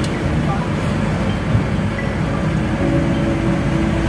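A motor vehicle running, with steady engine and road noise throughout.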